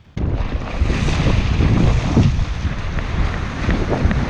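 Wind blowing on the microphone over the rush of breaking surf and foamy wash in the shallows. It starts abruptly just after the start and stays loud and steady.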